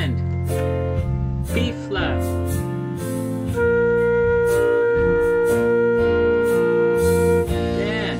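A concert flute holds a long, steady B-flat for about four seconds in the middle, over a synthesized band backing from notation software. The backing plays its C bar first and comes back in on B-flat near the end, answering the flute in a call-and-response exercise.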